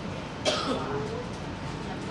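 A single cough: a sharp burst about half a second in, trailing into a short voiced sound, over steady room hum.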